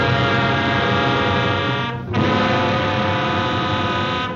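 A loud, buzzy droning held chord on the cartoon soundtrack, thick with overtones, broken off briefly about halfway and then struck again and held.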